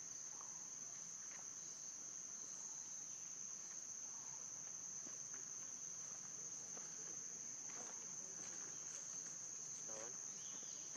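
A steady, high-pitched insect drone, with a few faint clicks scattered through it.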